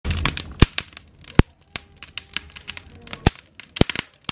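Wood fire in a fireplace crackling: a steady run of small snaps with four loud, sharp pops from the burning logs.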